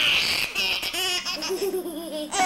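A baby laughing hard while being tickled: a long, high-pitched squeal of laughter, then shorter laughs in the second half.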